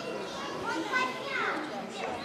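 Indistinct chatter of several people nearby, children's voices among them, with no single clear word.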